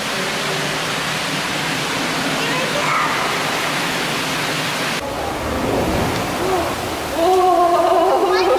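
Steady rushing of water from a penguin pool, with faint voices under it. About five seconds in the sound changes abruptly, and voices come in near the end.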